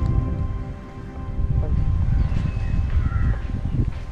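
Wind buffeting the microphone outdoors over open water: a loud, gusty low rumble that dips briefly about a second in, with faint background music fading under it early on.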